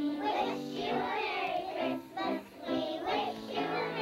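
Group of kindergarten children singing a song together, with musical accompaniment.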